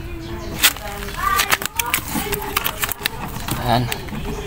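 Plastic wrapping around a bundle of wire splices crinkling and crackling as it is handled: a quick irregular run of sharp clicks through the first three seconds, with voices underneath.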